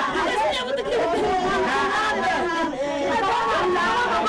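Several people talking over one another.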